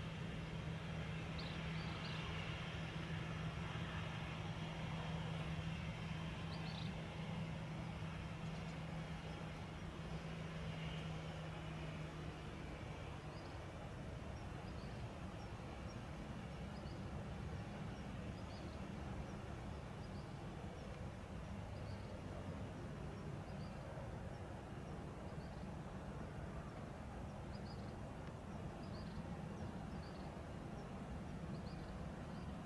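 Steady outdoor background noise with a low hum that stops a little under halfway through, and faint short high chirps repeating through the second half.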